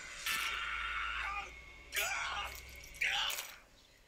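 Quiet, breathy, whisper-like vocal sounds in three short stretches: the first about a second long, then two shorter ones.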